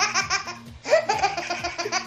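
Baby belly-laughing in rapid 'ha-ha' pulses, about eight a second, in two long bouts with a short break just under a second in.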